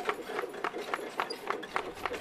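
Hoofbeat sound effect for bullocks pulling carts: quick, even clops, about five a second.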